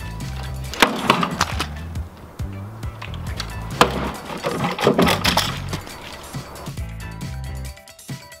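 Homemade spiked war flail striking a coconut: sharp whacks about a second in, at about four seconds and a quick cluster around five seconds, over background music.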